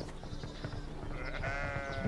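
A sheep bleating once: a single drawn-out bleat starting about a second and a half in, over quiet background ambience.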